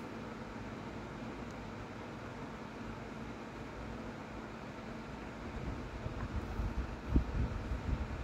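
Steady, fan-like background hiss. In the last few seconds, low rumbling bumps of handling or wind noise on the microphone join it, with one sharper bump near the end.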